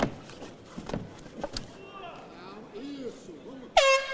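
A few sharp thuds of strikes and bodies on the canvas with shouting voices, then, just before the end, the end-of-round horn sounds with a loud, steady, buzzing tone as the round clock reaches zero.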